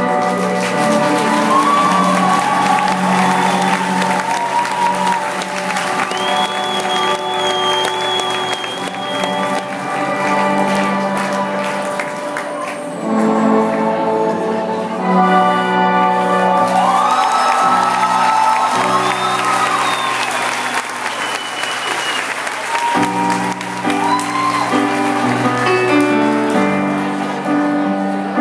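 Live rock band playing held, slowly changing chords, with the audience applauding and cheering over the music. The chords change about halfway through and again near the end.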